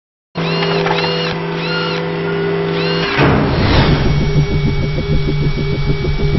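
Produced intro soundtrack: held synthetic tones with short repeated chirps, then a whoosh a little after three seconds that leads into a rhythmic pulsing beat, about six pulses a second.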